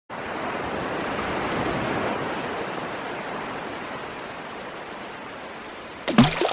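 A rushing noise that starts abruptly, swells over the first two seconds, then slowly fades away.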